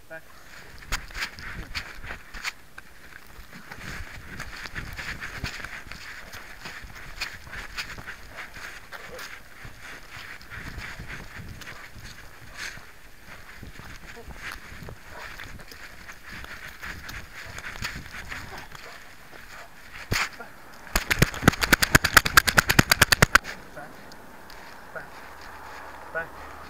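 Rubbing and knocking noise from a camera hung on a moving dog's collar: scattered clicks, then a loud burst of very rapid rattling clicks lasting about two seconds, near the end.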